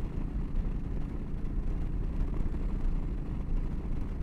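Steady rumble of wind rushing past and a Yamaha V-Star 1300's V-twin engine running at highway speed, about 70 mph.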